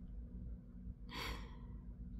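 A woman's single soft sigh about a second in, over a faint low steady hum.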